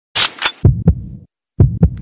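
Deep thumps in two pairs about a second apart, in a heartbeat-like beat, after two short sharp bursts at the start.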